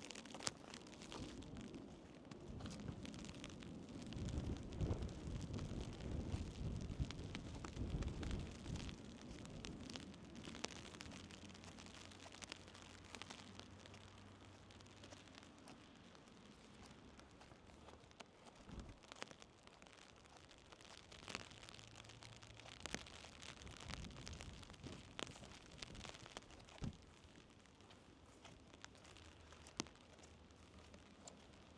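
Quiet open-air ambience: wind buffeting the microphone in low rumbling gusts, strongest in the first ten seconds, with scattered faint ticks and rustles throughout.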